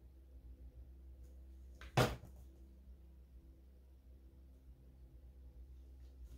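A plastic paint squeeze bottle set down on a table with one sharp knock about two seconds in, over a faint low hum.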